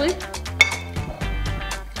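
Metal spoon clinking against a ceramic cereal bowl as cereal is scooped up, one sharp ringing clink about half a second in, over background music.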